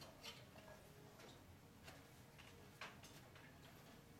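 Near silence of a quiet dining room, broken by about five faint, scattered clinks of tableware.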